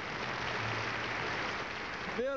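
Studio audience applauding at the end of a polka song, a steady wash of clapping.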